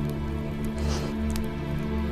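Background music of a drama score, with steady sustained low tones.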